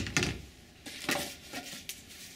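A sharp knock right at the start, then a few short, irregular clattering and rustling noises: a cordless drill being handled and set down on a hard benchtop.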